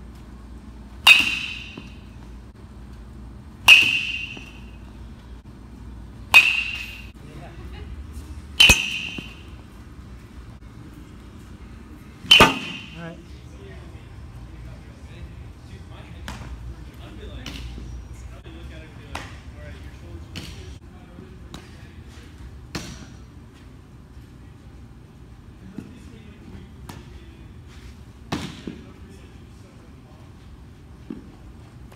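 Metal baseball bat hitting pitched balls: five loud, sharp, ringing pings about two and a half seconds apart over the first thirteen seconds. Fainter scattered knocks and clicks follow in the second half.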